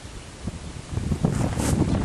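Wind buffeting the microphone: an irregular low rumble that grows louder about a second in.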